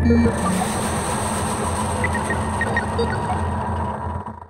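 Closing stretch of a song: a steady low drone under a dense wash of noise, with scattered short high blips.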